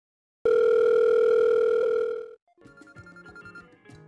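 Telephone ringback tone heard as an outgoing call rings: one steady tone about two seconds long, starting about half a second in and cutting off. Faint background music with a beat follows.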